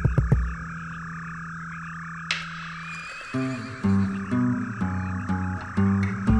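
A steady chorus of frogs croaking under soft background music: a low held note, then from about three seconds in a slow run of separate notes.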